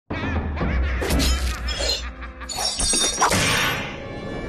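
Channel intro music with a steady deep bass and a wavering synth line, broken by two sudden crash sound effects, one about a second in and a longer one about two and a half seconds in.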